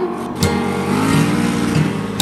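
Drag car's engine at full throttle as it pulls away down the strip, its pitch rising about a second in, heard under background music with guitar.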